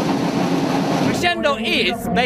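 Many marching drums played together in a continuous drum roll, a dense steady clatter that stops about a second in, when a man starts speaking.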